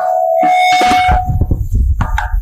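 Sound-system feedback ringing through the microphone: a sharp knock, then a steady ringing tone with fainter higher tones joining, fading out after about a second and a half over a low rumble.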